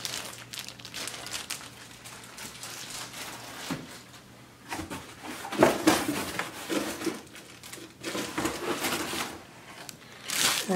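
Clear plastic bag crinkling as a brake rotor wrapped in it is handled and another is lifted out of a cardboard box, in irregular rustles that grow louder about halfway through.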